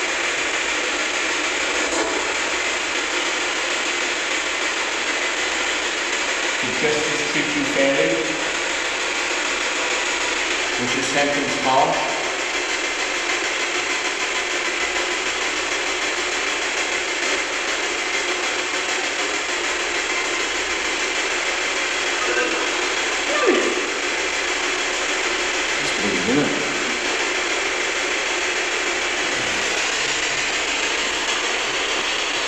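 A spirit box sweeping rapidly through radio stations, giving a steady, choppy rush of static. A few brief snatches of voice-like radio sound break through it.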